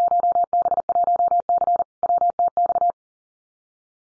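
Morse code at 40 words per minute: a single steady computer-generated tone keyed on and off in rapid dots and dashes, sending a Field Day contest exchange (class and section). It stops about three seconds in.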